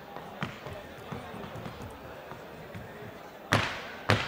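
A dancer's boots knocking lightly on the stage floor a few times, then one loud stamp about three and a half seconds in, over a murmuring crowd.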